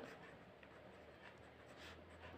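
Faint scratching of a ballpoint pen writing on notebook paper, close to near silence.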